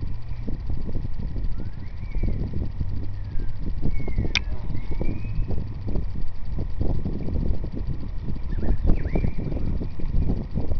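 Rumble and crackling handling noise on a handheld phone microphone held close to hands cutting through netting, with one sharp click a little over four seconds in.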